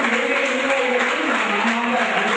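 Steady applause from a crowd, with a man's voice carrying underneath.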